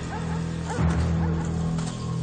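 Several short dog barks over a low, steady music drone.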